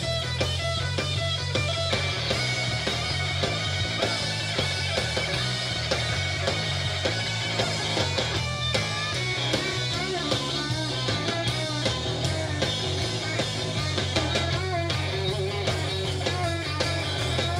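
Live blues-rock band playing an instrumental passage: an electric guitar lead on a Fender Stratocaster with bending notes, over steady bass and drums.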